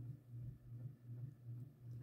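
Quiet room tone with a faint low hum.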